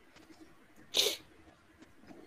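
A person sneezing once, a short sharp burst about a second in, over faint room tone.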